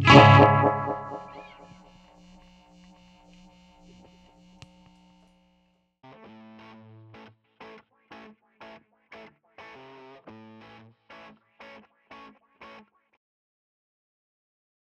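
A final chord on a Telecaster-style electric guitar played through effects, struck loud and left to ring out, fading over about five seconds. After a short gap comes a brief logo jingle of about a dozen short, choppy musical stabs that stops abruptly.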